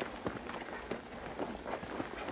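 People scrambling up a steep dirt bank, with irregular scuffing footsteps and the rustle of roots and dry grass as they grab and pull on them.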